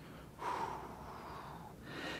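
A man's long, soft breath through the mouth, starting about half a second in and lasting over a second, taken as he moves through a spinal mobility exercise on all fours.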